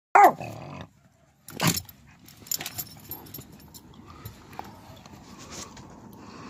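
Husky giving a loud, drawn-out bark that bends down and back up in pitch, then a second, shorter bark about a second and a half later, followed by quieter scattered small noises.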